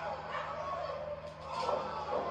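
Women yelling and screaming as they brawl, from the wrestling segment being played back, in wavering high-pitched cries that swell near the end, over a steady low hum.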